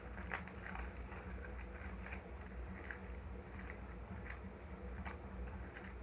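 Faint, scattered light clicks and scrapes of a spoon scooping powdered milk from its container, over a steady low hum.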